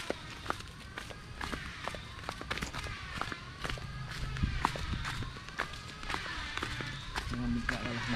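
Footsteps on a dirt path scattered with dry leaves: many short, irregular steps.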